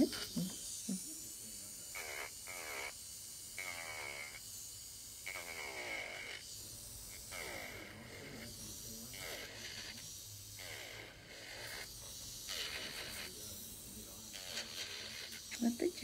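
Rasping strokes of a nail file on fingernails during a manicure, repeating about once a second.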